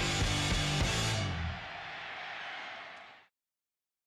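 Closing chord of background music: held low notes for about a second and a half, then ringing out and fading, ending in silence just over three seconds in.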